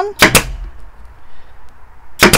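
Pneumatic staple gun firing twice in quick succession about a quarter second in: two sharp shots driving staples through felt into the solid walnut seat frame.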